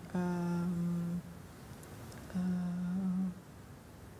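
A person's voice making two long, level "uhh" hesitation sounds while searching for words, each about a second long, the second starting about two seconds in.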